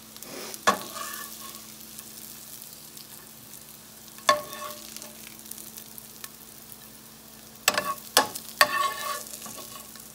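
Brussels sprouts sizzling in a skillet while a spatula scoops them out. Sharp, ringing clinks of the utensil on the pan come once about a second in, again around the middle, and three times in quick succession near the end.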